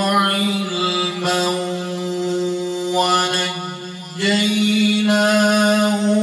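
A man reciting the Quran in a melodic chant, drawing out long sustained notes with brief melodic turns. The voice breaks off for a breath about four seconds in, then resumes on another held note.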